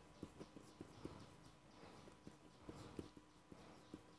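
Faint, irregular taps and scrapes of a marker pen writing on paper.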